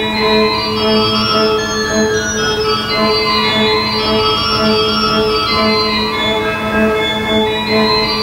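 Church pipe organ playing an 18th-century tambourin: a quick, running melody in the treble over a steady, pulsing low drone note.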